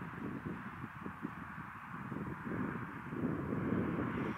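Wind rumbling unevenly on the microphone over a steady outdoor hiss, with no distinct event.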